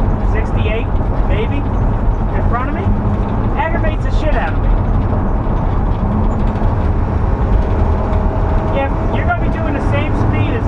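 Steady low road and engine noise inside a van's cab while it cruises at highway speed. Brief, indistinct voice-like sounds come and go over it.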